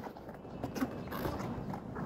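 Faint handling noise from the rubber facepiece of a Soviet PBF gas mask being flexed and pried open by hand: rubber rubbing, with a few small clicks.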